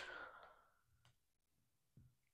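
Near silence: room tone, with a short faint breath at the very start.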